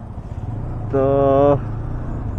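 TVS Apache RTR 160 2V motorcycle's single-cylinder engine running as the bike pulls away at low speed, a steady low rumble that grows a little louder in the first half-second. A man's voice draws out one word about a second in.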